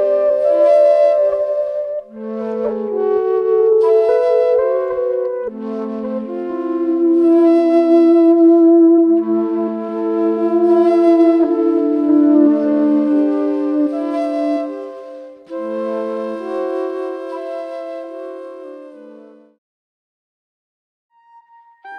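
Flute playing long held notes over layered, sustained electric guitar loop textures in a slow ambient improvisation, fading out near the end.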